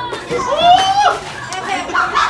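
Excited, high-pitched women's voices: a long rising squeal about half a second in, then overlapping chatter and laughter from the group.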